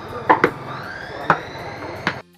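Cleavers chopping raw meat and bone on wooden chopping boards: three sharp chops, two in quick succession just after the start and a third about a second later.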